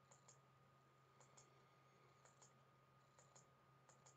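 Near silence: faint room tone with a steady low hum and faint pairs of clicks about once a second.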